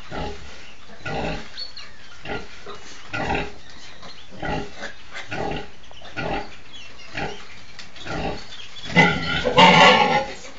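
A nursing sow grunting in a steady rhythm, about one short grunt a second, the typical nursing grunts of a sow letting down milk to her suckling piglets. Near the end a much louder, longer burst of pig squealing breaks in.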